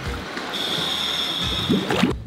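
Pool water sloshing and bubbling as a scuba diver submerges, with a steady high tone joining about half a second in, over background music.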